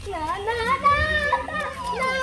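A young child's high-pitched voice talking almost without a break, the pitch gliding up and down.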